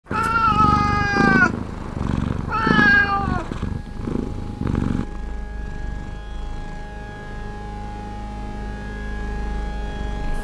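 A domestic cat meowing twice, each long meow falling in pitch, followed by softer, lower cat sounds. About halfway through, a steady droning tone begins and holds.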